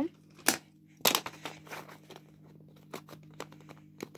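Plastic LEGO train track pieces being handled and pressed against a baseplate: two sharp plastic clacks about half a second and a second in, then quieter scattered clicks and rustling.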